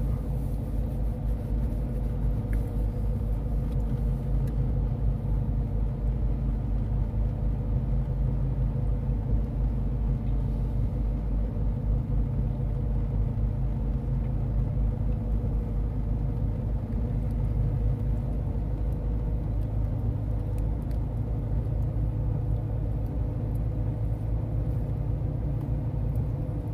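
A car driving on a wet road, heard from inside the cabin: a steady low rumble of engine and road noise.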